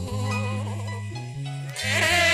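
Live church worship music: a bass line plays held, stepping low notes under faint wavering singing voices. A loud lead vocal comes back in near the end.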